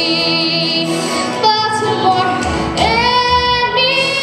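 A girl singing into a microphone over recorded musical accompaniment, holding long notes with vibrato; about three seconds in she slides up to a new note and holds it.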